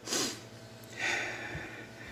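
A person breathing out sharply through the nose twice, about a second apart.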